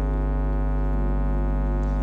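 Electronic church keyboard holding a sustained organ-like chord over a steady mains hum; one of the lower notes changes about halfway through.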